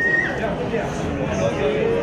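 Overlapping voices of banquet guests chatting around a table, with a short high-pitched voice or squeal at the very start.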